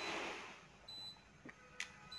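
Haier 336 inverter refrigerator's touch control panel giving one short, high beep about a second in, as a key press steps the function setting to fuzzy mode. A faint click follows near the end, over quiet room tone.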